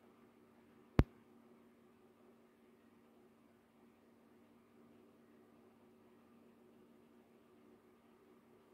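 Near silence: faint steady room hum, broken by a single sharp click about a second in.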